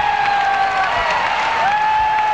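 Concert audience applauding and cheering at the end of a song, with a high tone over the clapping that swoops up, holds for most of a second and drops away, several times over.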